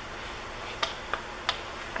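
Foam roller being worked over a soft clay slab, faint against a steady hiss, with three light, sharp clicks in the middle of it.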